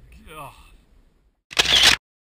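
A man's voice trailing off at the start, then about one and a half seconds in a loud camera-shutter sound effect lasting about half a second that cuts off suddenly into silence.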